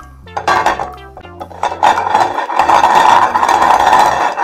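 Painted eggs clicking against a glass plate as they are set down, over background music with a steady bass line. About halfway through, a louder, continuous clatter takes over.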